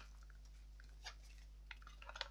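Near silence: room tone with a few faint, short clicks from handling a small canvas-and-leather pouch.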